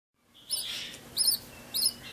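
Ten-day-old budgerigar chick cheeping: three short, high chirps about two-thirds of a second apart.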